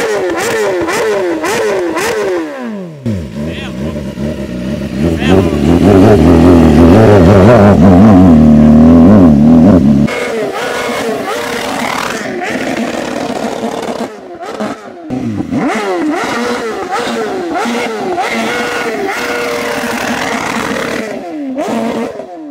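BMW S1000RR inline-four sport bike revved in quick, repeated throttle blips, each rise and fall in engine note lasting about half a second. This is the rev-and-spit routine that makes the hot stainless exhaust shoot flames. Around the middle there is a louder, deeper stretch of engine sound that ends abruptly, then the quick blips resume.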